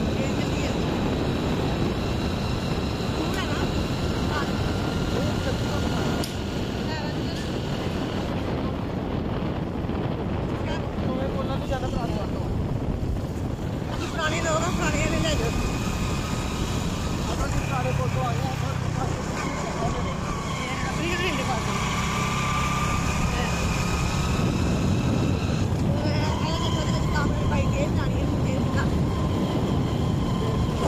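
Motorcycle running at road speed, heard from the pillion seat, with wind rushing over the microphone. Held, wavering tones come and go on top of it from about halfway through.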